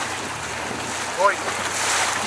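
Wind on the microphone and water rushing past a moving center-console boat, a steady noisy hiss. A brief rising voice comes about a second in, and the hiss swells near the end.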